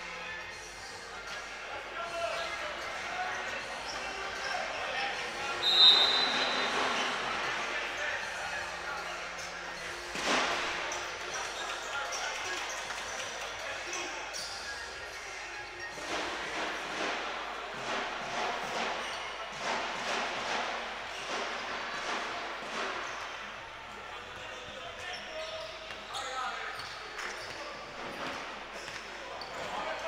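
Indoor basketball gym ambience during a timeout: voices of players and spectators echoing in the hall, with basketballs bouncing on the wooden court. A short high whistle sounds about six seconds in, and the bouncing thuds come thickest from about halfway through.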